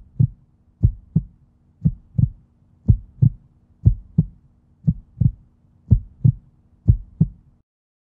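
Heartbeat sound effect: paired lub-dub thumps about once a second, eight beats, over a faint steady hum, stopping shortly before the end.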